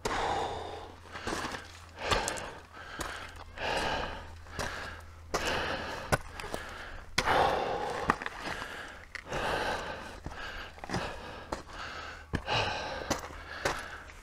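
A man breathing hard and close to the microphone, one deep breath about every second or so, from the effort of climbing a steep rocky path in the heat. There are a few sharp clicks of boots on loose stones.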